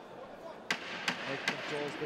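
Three sharp slaps about 0.4 s apart from a mixed-martial-arts exchange in the cage, over low arena crowd noise; a short shout comes near the end.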